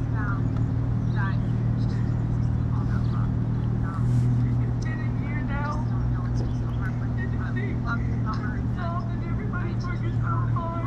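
An engine running steadily nearby, a low even hum that shifts slightly about four seconds in, with faint voices of people talking in the background.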